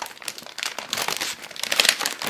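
Crinkly snack wrapper being crumpled and pulled open by hand: a dense run of crackles that is loudest near the end.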